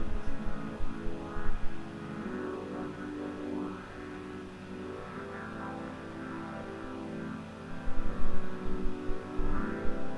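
Sustained synth chords from the Solina V2 string-ensemble plugin, moving through a slow progression of about four chords, each held for two to three seconds. Low thuds sit under the first second or so and again near the end.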